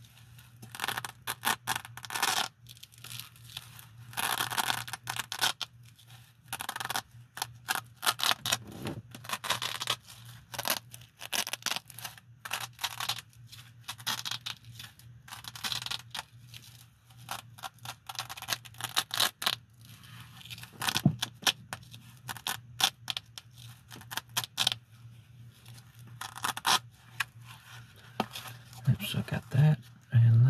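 Velcro on the flap of a black nylon pouch being ripped open and pressed shut again and again by gloved hands: irregular ripping bursts, some brief and some lasting about a second.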